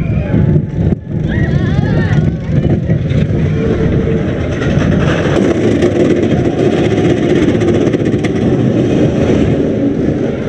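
Roller coaster train running along its track, heard from the front seat: a steady rumble of wheels on rail, with a whirring hum building in the second half as the train picks up speed.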